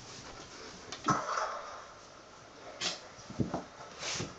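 A few short knocks and scuffs, the loudest about a second in and others near the end, from a kitten scuffling with a plush toy horse on a wooden floor.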